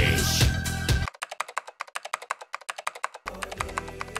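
Music stops sharply about a second in, giving way to rapid typing on a laptop keyboard, roughly ten keystrokes a second, with a low hum under the clicks near the end.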